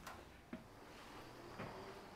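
Quiet room tone with a few faint, soft knocks: footsteps going up a staircase.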